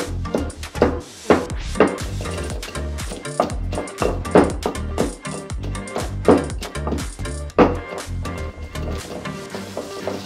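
Background music over irregular dull thuds of a wooden pestle pounding green chillies and garlic in a granite mortar, about one stroke a second, with fewer strikes near the end.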